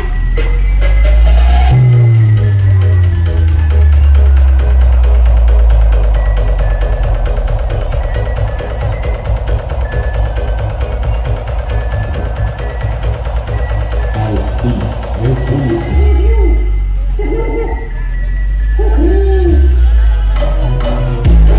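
Loud electronic dance music with heavy bass, played through a carnival parade sound system. Around fourteen seconds in the bass thins out and a wavering melodic line takes over.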